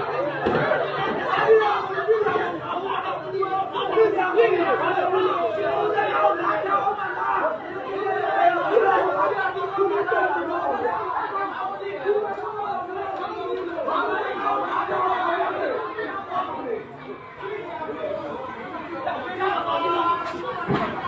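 Crowd chatter: many people talking over one another, with no single voice standing out for long.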